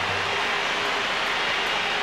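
Large stadium crowd cheering a point just scored, a steady wash of many voices with no breaks.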